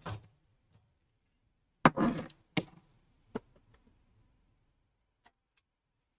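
Handling noise from a metal hard-drive bracket and its screws being fitted in a desktop PC case: a short rattle about two seconds in, then two sharp clicks.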